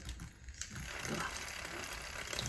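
Handheld battery milk frother running in a small glass of sea moss gel, a faint steady whir as it blends the gel to break up small thickened lumps.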